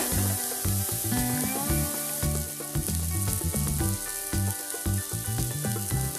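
Chopped vegetables and tomato sizzling steadily in hot oil in a kadhai as a spatula stirs them, over background music.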